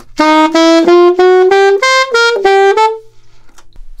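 Alto saxophone playing a short phrase slowly: about ten tongued notes climbing step by step from C through C-sharp, D and D-sharp to E, leaping up to high A, then back down through G and E to F-sharp, ending about three seconds in.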